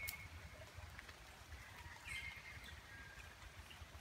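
Two faint, short high chirping calls, one at the start and another about two seconds later, over a low outdoor rumble and a few light clicks.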